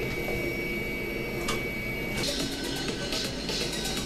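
Jet aircraft engine sound effect: a steady hum with a thin high whine. About halfway through, the whine stops and a brighter rushing hiss takes over, as for a takeoff.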